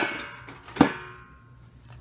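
Lid of a stainless steel trash can clanging twice, a little under a second apart, each hit leaving a metallic ring that fades away.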